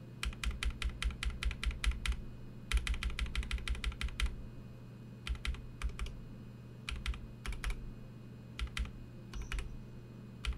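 A Holy Panda tactile mechanical keyboard switch, lubed with Krytox 205g0, pressed over and over on one key: two quick runs of rapid keystrokes, then a few short groups of two or three presses.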